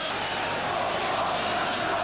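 Football stadium crowd, a steady din of many voices from the stands.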